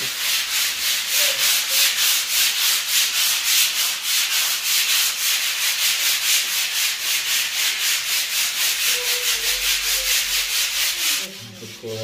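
A wall being scraped and sanded down by hand to prepare it for repainting, in quick, even back-and-forth strokes of about five a second. The strokes stop about 11 seconds in.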